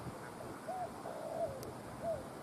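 A bird calling in the open: a few short whistled notes, each rising then falling in pitch, with a longer one about a second in.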